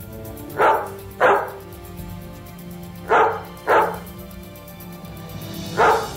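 A dog barking five times: two pairs of sharp barks, then a single bark near the end, over background music.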